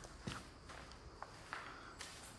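Faint footsteps: a few soft, separate steps on a dusty floor.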